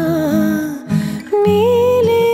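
A woman's voice humming a wordless, gliding melody of a ghazal over guitar accompaniment, breaking off about a second in and coming back on a rising note.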